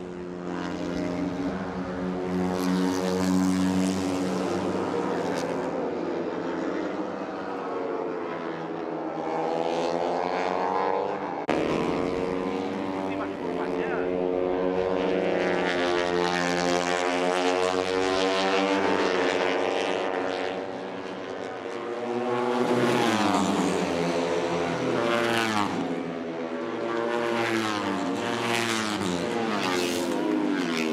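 Moto3 race bikes' single-cylinder four-stroke engines running at high revs in close company. Their pitch climbs through the gears and drops repeatedly, with several sharp falls in pitch in the last third as they brake and downshift.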